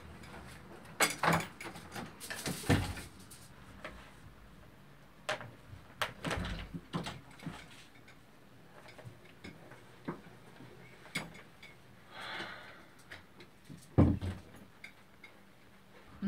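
Scattered knocks and clicks of objects being handled in a small room, with a short rustle about three-quarters of the way through and one louder, deeper knock near the end.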